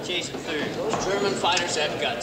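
Men's voices talking, not clear enough to make out as words.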